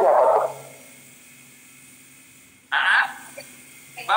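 A man's voice trails off, then a pause with only a faint steady hum. About three seconds in comes one short, high-pitched vocal outburst.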